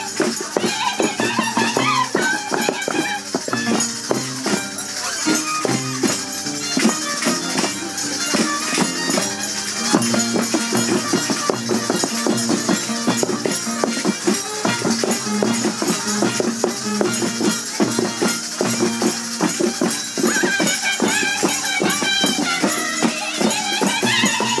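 Andean violin and harp playing a Negritos dance tune live, at a steady dance tempo.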